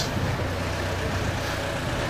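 Steady city street background noise with a low hum of road traffic.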